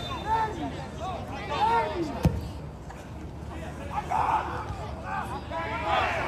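Scattered shouts and calls of players and a few spectators carrying across a sparsely filled football ground, with one sharp knock a little over two seconds in.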